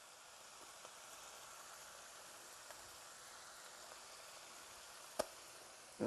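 Faint sizzling of lobster meat, carrots and shallots sautéing in butter in a frying pan, with a single sharp click about five seconds in.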